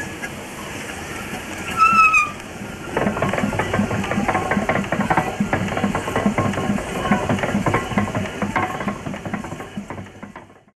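Two-cylinder Lidgerwood steam hoist engine running, a steady rhythmic beat of about three strokes a second that picks up about three seconds in. Just before that comes a brief high squeal.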